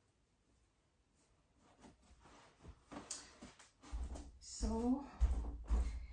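Soft rustling, then heavy bumps and rumble right at the microphone as the phone recording is picked up and moved, with a short wordless vocal sound in the middle of the handling.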